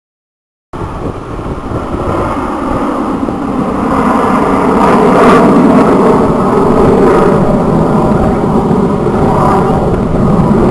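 Jet engines of an aerobatic formation flying overhead, heard as a steady rumble that cuts in suddenly about a second in, swells over the next few seconds and stays loud.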